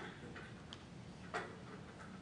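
A few faint, sharp clicks and light knocks at uneven intervals over a quiet room background, the loudest a little over a second in.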